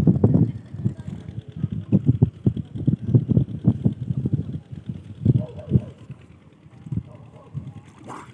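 Water sloshing and splashing close to the microphone as someone wades beside a fish net: an irregular run of low splashes that thins out over the last couple of seconds.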